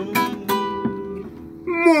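Classical guitar plucking the last few single notes and chords of a milonga, each left to ring and fade, the sound dying down. Near the end a man's voice breaks in with a falling exclamation.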